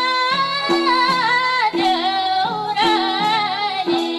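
A young woman singing a Nepali folk song into a microphone, her melody bending and ornamented, over instrumental accompaniment with a steady repeating beat about twice a second.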